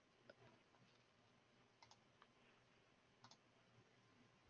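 Near silence over a conferencing line, broken by a few faint computer clicks from a mouse or keyboard: a single click, then a quick double click, another single one and a final double click.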